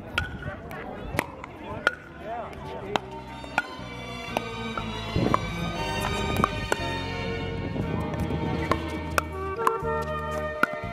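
Sharp pops of pickleball paddles hitting the plastic ball during a rally, with players' voices early on. About three seconds in, background music with sustained chords comes in, and the paddle pops go on under it.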